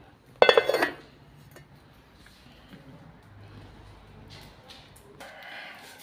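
A metal cooking pan clatters once, briefly and loudly, with a short metallic ring about half a second in. Quieter handling noise follows.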